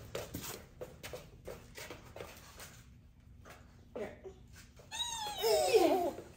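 A toddler's high-pitched squeal about five seconds in, sweeping up and falling away, with a shorter vocal sound a second before it. Before that, a scatter of small clicks and knocks from handling and movement.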